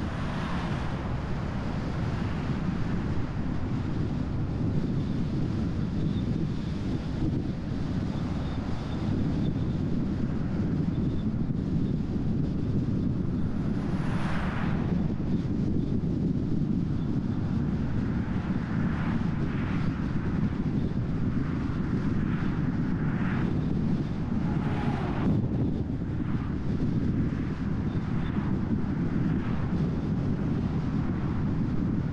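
Steady low rumble of road and wind noise from a car driving along, with oncoming vehicles briefly swelling past about halfway through and again a few seconds before the end.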